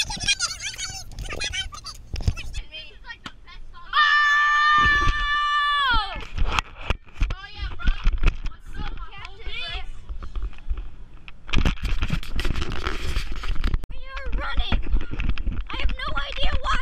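Children's voices, shouting and chattering, with one long, high, held shriek about four seconds in that drops in pitch as it ends.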